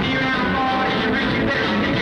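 Live pub-rock band playing: electric guitar, bass and drums in a steady, dense wash, recorded through a home camcorder's microphone with poor, muddy sound.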